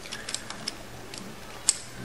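A few small, sharp metal clicks and taps as a steel fixture rod with threaded studs and nuts is handled against a milling machine's T-slot table, the sharpest click near the end.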